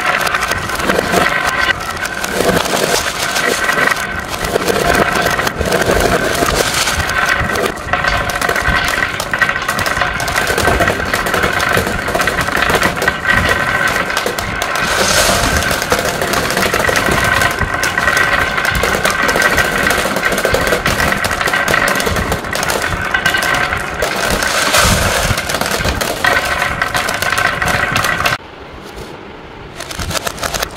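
Dozens of glass marbles rolling down carved wooden zigzag tracks and spinning around a wooden bowl. The result is a continuous dense clatter of glass rolling on wood and clicking against glass.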